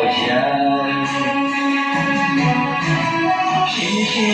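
A man singing a Chinese pop love song over backing music, holding one long note through the first couple of seconds before moving on to the next line.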